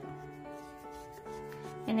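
Soft background music with held notes, over a faint rubbing of yarn being pulled through a crocheted piece.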